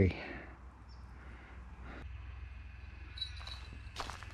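Quiet outdoor background with a low steady hum and a couple of faint, short high chirps about three seconds in.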